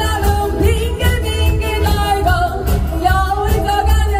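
Live band playing an upbeat Korean pop song: a woman singing over drums, bass guitar, electric guitar and keyboard, with a steady beat.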